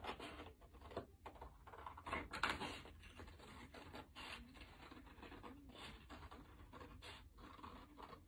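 Scissors cutting through a sheet of paper: faint, irregular snips and scrapes of the blades and paper, the loudest about two and a half seconds in.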